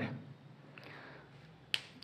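A quiet room, then one short, sharp click near the end.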